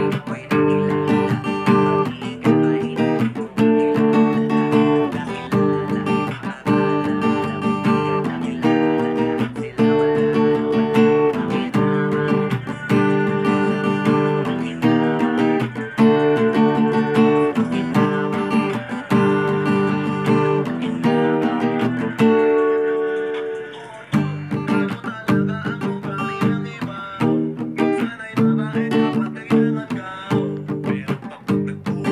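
Acoustic guitar strummed in a steady rhythm, cycling through G minor, E-flat and D barre chords. A little past three quarters of the way through, one chord is left ringing and fades briefly before the strumming starts again.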